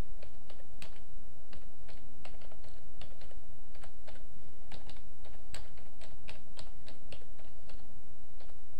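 Typing on a computer keyboard: a run of irregular key clicks over a steady low hum.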